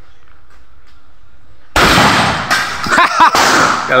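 Handgun shots on an outdoor range: three loud shots in quick succession starting a little under halfway in, each with a short echoing tail.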